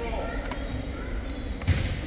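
Volleyball being struck in a gymnasium hall: a faint knock about half a second in and a stronger thump near the end, over a murmur of distant voices.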